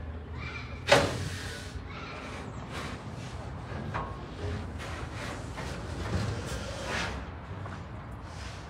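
A sharp bang about a second in, then scattered lighter knocks and clatter over a low steady hum.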